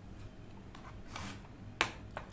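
A single sharp click near the end, like a computer mouse button, over faint room noise, with a soft hiss about a second in.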